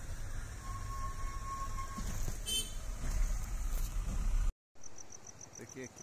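Low rumble and wind noise of riding in a moving vehicle, which breaks off a little over four seconds in; then insects, crickets by their sound, chirping in an even high pulse of about five a second.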